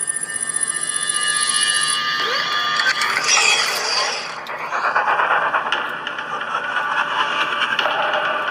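Intro sound effects: a rapid, trilling bell-like ringing, followed by a sweeping shimmer and then a dense bright layer of sound.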